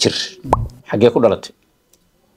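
A man speaking in short phrases, broken about half a second in by a brief plop that rises quickly in pitch.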